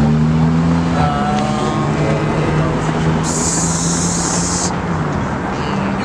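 A motor vehicle's engine running with a low, steady hum that rises slightly in pitch about a second in, and a sudden hiss lasting about a second and a half from about three seconds in.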